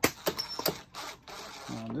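A few light metallic clicks and a short scrape as a cordless driver's 3/8 socket is set on and turns an ignition coil mounting bolt on a small two-stroke mower engine.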